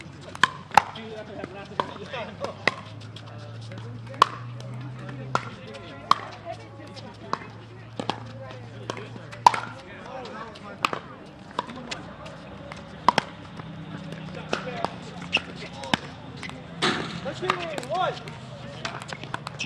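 Pickleball paddles hitting the hard plastic ball and the ball bouncing on the court across several courts: sharp, irregular pops, a few each second, with players' voices in the background.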